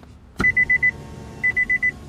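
A click as the Nissan Pathfinder's ignition is switched on, then the car's warning chime: runs of five rapid high beeps repeating about once a second, over a low steady hum that comes on with the ignition.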